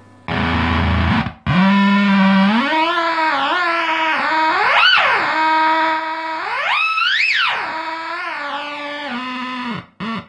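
ZVEX Fuzz Factory fuzz pedal on an electric guitar, starting with a short fuzzed burst and then squealing into a sustained buzzing tone. The tone's pitch glides up and down as the knobs are turned, with two high swoops, then cuts off just before the end. It is the space-radio, sci-fi kind of sound the pedal is known for.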